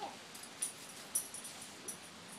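A dog whining briefly at the start, then moving about on a concrete patio with three light, high clicks and jingles spread over about two seconds.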